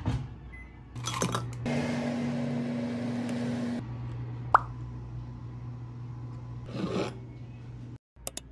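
Hot water poured from an electric kettle into a ceramic soup bowl, an even splashing hiss lasting about two seconds, with small clinks just before it. A single sharp click follows shortly after, over a steady low hum.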